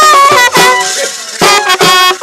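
Indian folk band music: hand-played drums beating fast under a wind instrument's bending melody. The music thins out briefly around the middle, then the drum strikes and melody come back in.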